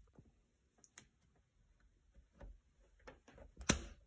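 A Blum 70.6103 plastic opening-angle stop being pressed onto a Blum 170° concealed cabinet hinge: faint clicks as it is handled and lined up, then a sharp snap near the end as it clips into place, limiting the hinge to 130 degrees.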